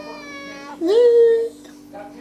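Tabby kitten meowing: a fainter meow at the start, then one loud meow about a second in whose pitch rises and then holds steady.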